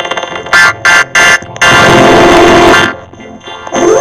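Harsh, heavily distorted, effects-processed audio with a buzzing, alarm-like tone. It comes in several short choppy bursts in the first second and a half, then runs loud for over a second before dipping briefly near the end.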